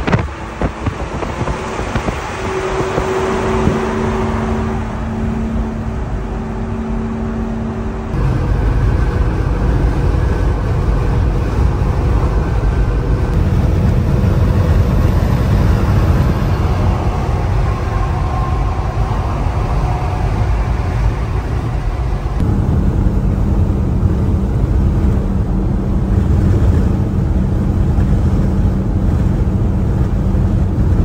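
Diesel box truck at highway speed, heard from inside the cab: a steady engine drone mixed with road and wind noise. The noise becomes louder and deeper about eight seconds in.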